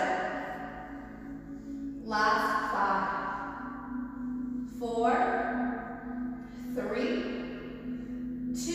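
A woman's voice in a few short phrases, about two, five and seven seconds in, over soft background music with a steady, low held tone.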